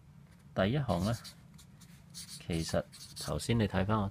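A felt-tip whiteboard marker scratching across paper as short letters are written, with a voice speaking in short phrases in between, the voice louder than the pen.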